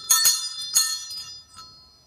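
Small brass altar hand bell rung with a few quick shakes in the first second, its bright ringing fading away, marking the close of the Gospel reading.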